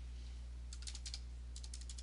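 Computer keyboard typing: a quick run of faint key clicks starting under a second in, as a username is typed. A steady low electrical hum runs underneath.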